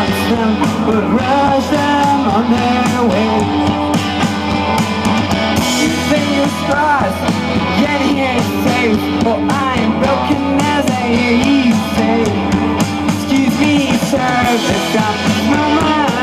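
Indie rock band playing live through a PA: drums, electric and acoustic guitars, and a man singing, at a steady loud level.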